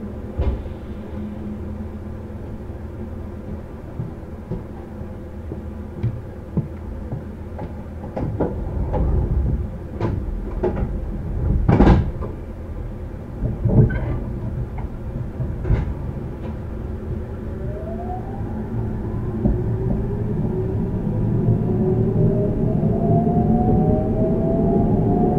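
On board a JR Central 313-series electric train with a Toshiba IGBT VVVF inverter. Several sharp knocks and clunks, the loudest about halfway through, come over a low rumble. In the last third the inverter and traction motors start up with a cluster of rising whines as the train begins to accelerate.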